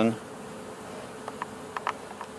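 Honey bees buzzing around an open hive in a steady hum, with a few faint light ticks in the second half.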